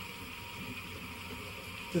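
Steady background hiss in a pause between spoken phrases, with a man's voice starting again right at the end.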